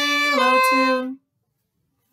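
Violin bowed slowly in a simple beginner phrase: a held note that steps down to a second note, then a last held note that stops about a second in.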